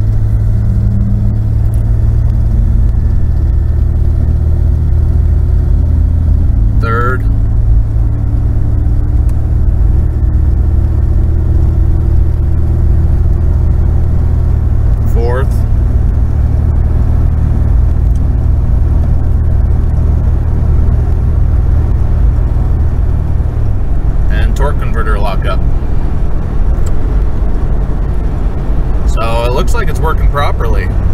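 Inside the cabin of a 1991 Ford Explorer: its 4.0 L V6 and road noise drone steadily while the truck accelerates, the engine note climbing through the first half. About 24 s in the note drops as the A4LD automatic upshifts into overdrive, settling at around 2200 rpm.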